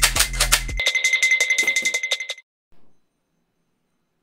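Background music with a steady beat. About a second in the bass drops out, leaving a high ringing tone with rapid ticking that fades out about halfway through.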